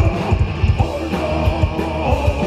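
A live rock band playing: electric guitars over a fast, steady drum beat.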